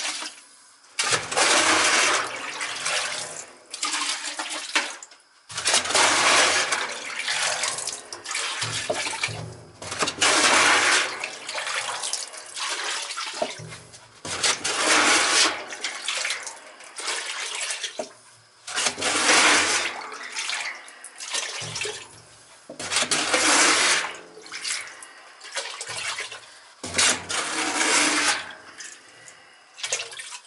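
Leftover heating oil being scooped from the bottom of an opened steel oil tank with a container and poured into a bucket: repeated splashing, pouring bursts every few seconds, with quieter pauses between scoops.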